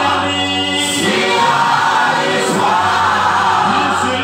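Gospel singing in call-and-response style: a man leads into a microphone and a group of women singers join in, holding long notes.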